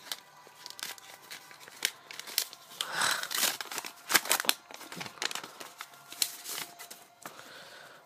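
Paper crinkling and tearing with irregular sharp crackles as a hand-made paper card pack is opened and its paper cards are pulled out and handled; busiest a few seconds in.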